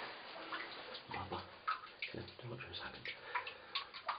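Faint, indistinct voices in short fragments, with scattered small ticks and clicks between them.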